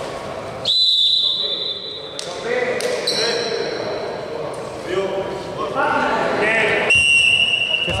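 Sports referee's whistle blown in long steady blasts in a reverberant gym, stopping play: one about a second in lasting about a second and a half, a higher-pitched one about three seconds in, and a lower-pitched tone near the end. Players' voices echo between the blasts.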